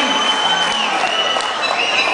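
Large theatre audience applauding, the clapping dense and steady, with a thin high steady tone held above it through most of the stretch.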